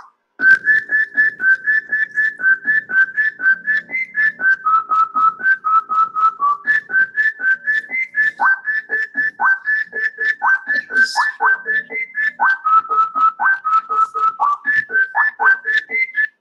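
A tune built from sampled frog calls: a fast, even run of short pitched notes, about four or five a second, stepping up and down in a melody. From about halfway on, many of the notes slide sharply downward.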